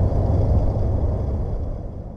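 Steady low outdoor rumble that fades away steadily as the sound is faded out.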